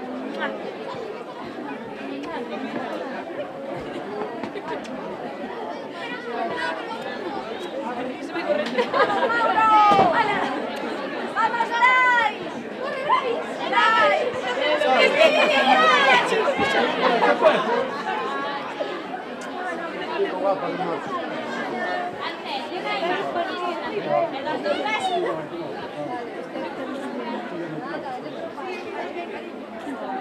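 A small crowd chattering, many voices talking over one another. It grows louder in the middle, with raised, high-pitched, excited voices.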